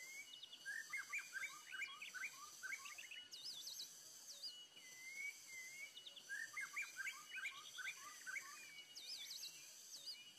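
A songbird singing a phrase of quick falling notes followed by high warbled notes, heard twice about five seconds apart, over a steady high insect drone.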